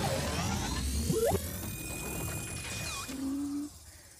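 Cartoon sound effects of a gadget sucking up anger and turning it into heat: rising electronic sweeps over a low rumble, quick upward tones about a second in, then a steady high tone and a falling glide, ending with a short low hum that fades out near the end.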